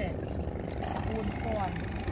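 Background chatter of several voices talking over one another, over a steady low engine hum.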